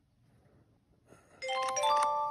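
Electronic chime from a solitaire game app on a smartphone's speaker: a quick run of bell-like notes, each higher than the last, entering about one and a half seconds in and ringing on together.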